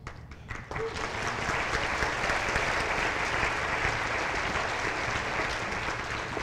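Audience applauding, starting about a second in and holding steady.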